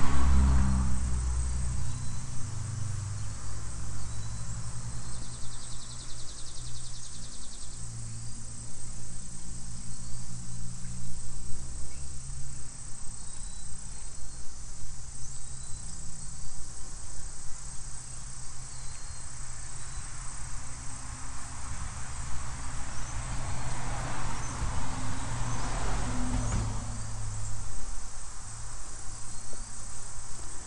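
Insects chirring steadily at a high pitch outdoors, over a low, wavering rumble.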